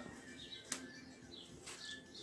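Faint rustling and crinkling of cling film being pulled off its roll and handled, with a small click about two-thirds of a second in.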